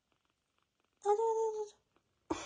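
Near silence, then about a second in a single high, drawn-out cooing call of 'aa jo' ('come here') in a woman's sing-song voice, lasting under a second.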